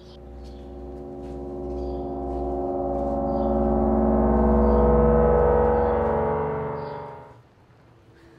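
A deep, gong-like drone of many steady tones, swelling louder for about five seconds and then cutting off suddenly about seven seconds in: a suspense sound effect on a horror film's soundtrack.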